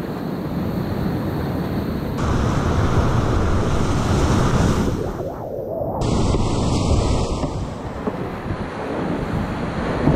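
Loud, steady rush of whitewater rapids churning around a kayak, picked up close on a head-mounted action camera with water and wind buffeting the microphone. The top end goes briefly muffled about five seconds in.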